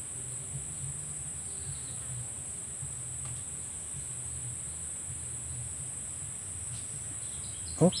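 Insects chirring in a steady, high-pitched drone, with a faint low hum underneath.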